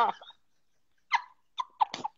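Two women laughing: a laugh trails off at the start, then after a moment of dead silence come a few short, breathy gasps of laughter about a second in and near the end.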